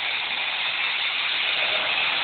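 Suzuki GSX-R sportbike's inline-four engine running on a dynamometer, captured through an overloaded phone microphone as a steady, harsh, distorted hiss with no clear engine note.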